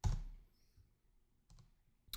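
A computer mouse button clicking once sharply, then a fainter click about one and a half seconds in.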